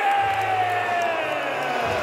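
Ring announcer holding the last vowel of a fighter's name in one long call that slowly falls in pitch, over an arena crowd cheering.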